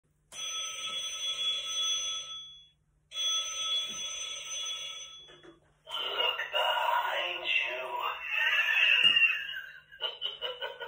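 A telephone ringing twice with a bell-like ring, each ring about two and a half seconds long with a short gap between. About six seconds in the ringing gives way to a voice.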